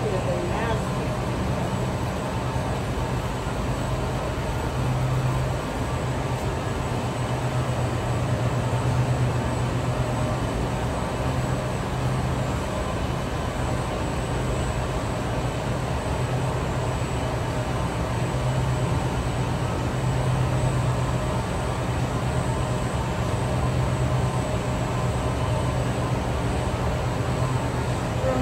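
Ceiling evaporator fans of a walk-in refrigerated produce cooler running: a steady low hum with a faint high whine above it.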